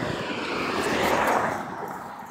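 A vehicle passing by: a steady rushing noise that swells about a second in and fades away near the end.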